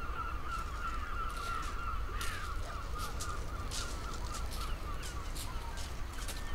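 A flock of birds calling continuously in a steady, high chatter, with scattered short scratchy sounds over a low rumble.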